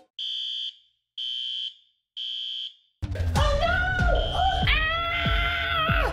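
Smoke alarm beeping: three high-pitched beeps about half a second each, a second apart, in the three-beep pattern of a smoke alarm's alarm signal. About three seconds in, a voice and music start over it while the alarm keeps sounding.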